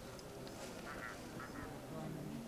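Two short harsh animal calls, about a second in and again half a second later, over faint distant voices.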